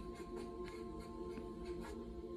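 Marker pen writing on a whiteboard, a run of short strokes a few times a second, over steady ambient music with long held tones.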